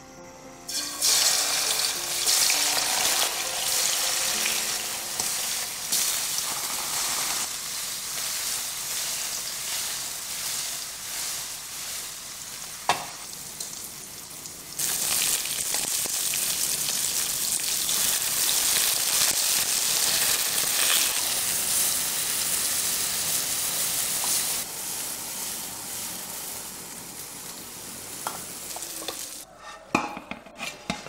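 Slices of firm tofu frying in hot oil in a nonstick pan: a loud, dense sizzle that starts suddenly about a second in, drops back in the middle and comes back strongly, easing a little near the end.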